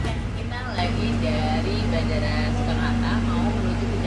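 Steady low hum of an airport rail link train carriage interior, with a constant drone underneath, and faint voices talking in the background. A music bed fades out at the very start.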